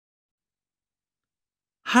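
Silence, with a narrator's voice starting to speak just before the end.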